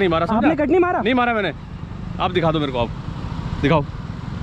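Men talking loudly in short bursts over steady road traffic noise.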